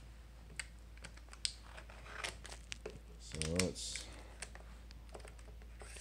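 Faint scattered clicks and light crinkling from a shrink-wrapped cardboard knife box being handled and picked at, with a brief murmur from a man's voice about three and a half seconds in.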